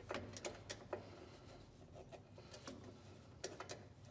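Faint, scattered metallic clicks of a screwdriver working on a VW Beetle's rear drum brake adjuster: a few quick clicks near the start, then more around three and a half seconds.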